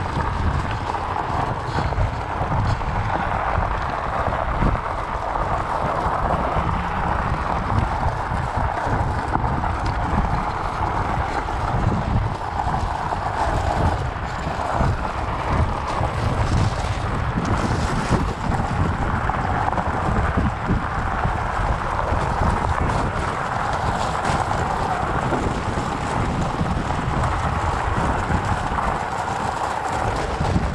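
Wind buffeting the microphone over the steady crunch of fat-bike tyres rolling on fine gravel, a continuous noisy rumble with no distinct knocks.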